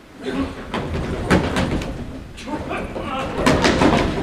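A run of sharp knocks and thumps, several close together near the end, over a murmur of voices that grows louder in the last second.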